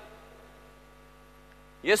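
Faint, steady electrical mains hum from the amplified sound system, a stack of even tones with no change in pitch. A man's voice comes back in near the end.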